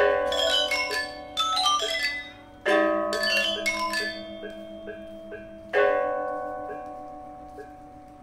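Balinese gamelan: bronze metallophones struck with mallets in fast interlocking runs, then two loud unison strikes, about a third of the way in and again past the middle, that ring out and slowly die away over a light pulse of small repeated notes, about three a second.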